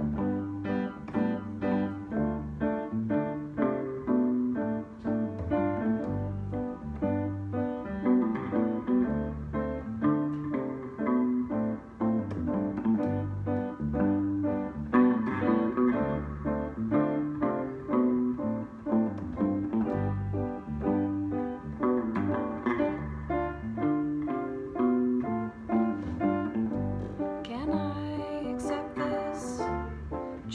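Instrumental opening of a song: a guitar and a keyboard play together over a repeating pattern of low bass notes. A singing voice comes in near the end.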